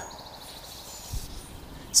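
Quiet riverbank ambience: a faint high-pitched trill of a bird or insect that dies away within the first second, and one soft low thump a little after a second in.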